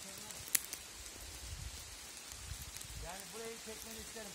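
Footsteps shuffling through dry leaf litter on a forest floor, a faint even rustle with a single sharp click about half a second in and some low rumble in the middle. A man's voice comes back near the end.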